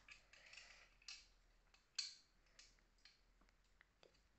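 Faint clicks and taps of plastic Lego pieces being handled and fitted together. There are a few scattered clicks, and the sharpest comes about two seconds in.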